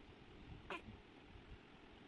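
Near silence broken once, about two-thirds of a second in, by a brief high animal call that falls quickly in pitch.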